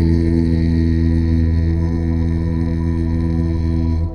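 A deep voice chanting one long, steady low tone rich in overtones, breaking off near the end.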